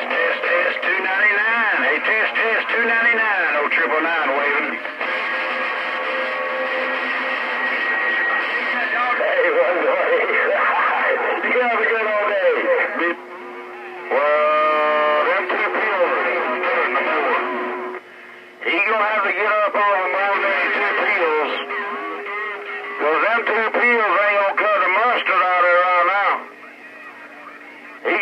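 Several CB radio stations on AM skip coming through the CB radio's speaker: garbled, overlapping voices with steady heterodyne whistles and a warbling tone in places, fading briefly out several times.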